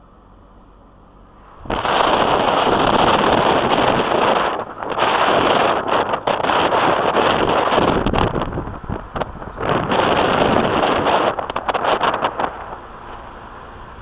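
Wind buffeting the microphone from a moving car: a loud, gusty rush that starts suddenly about two seconds in, cuts in and out several times, and dies away near the end to a quieter steady hiss.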